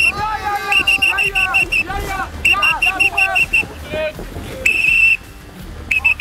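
Referee's whistle blown in quick trills: a run of short blasts, about seven a second, a second in and again at about two and a half seconds, then one longer blast near the end. The referee is calling a foul and showing a yellow card.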